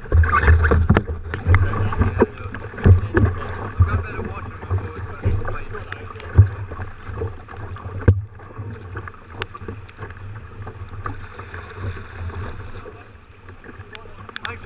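Choppy sea water slapping and splashing against a sea kayak's hull, with frequent sharp knocks, over a steady low rumble of wind on the microphone. The sound changes abruptly about eight seconds in and is somewhat quieter after that.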